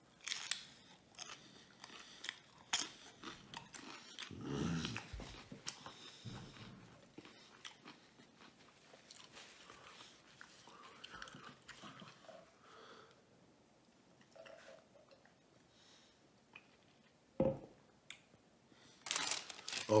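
A man chewing a mouthful of crunchy deep-fried taco close to the microphone, with crisp crunches through the first several seconds, then quieter chewing. One short, louder sound comes a few seconds before the end.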